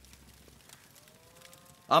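A faint, drawn-out call about a second long, rising slightly in pitch, over a quiet background; a man's voice starts right at the end.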